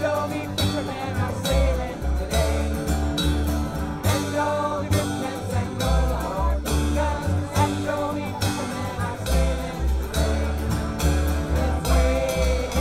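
Live acoustic band playing a song: upright bass, two strummed acoustic guitars and a drum kit, with several voices singing together.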